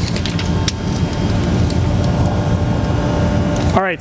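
A loud, steady low machine rumble with a faint even hum, like a running engine or a large fan. A few light clicks come in the first second, as the metal tape measure is handled.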